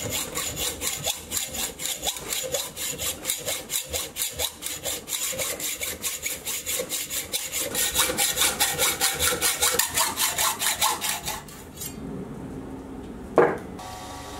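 Hand hacksaw cutting through a cold-drawn 1214 steel round bar clamped in a vise, in steady back-and-forth strokes that grow a little louder before stopping a couple of seconds before the end. A quieter steady hum and a single knock follow.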